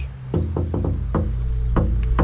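Rhythmic knocking on a front door, a quick run of raps followed by two more spaced ones, tapped out like a beat. A low background music bed plays under it.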